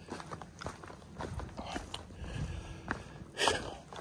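Footsteps of a hiker walking on a dirt trail strewn with dry fallen leaves, a faint, uneven crunch of steps. Near the end there is a short rush of noise.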